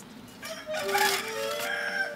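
A rooster crowing once, lasting about a second and a half, over soft background music.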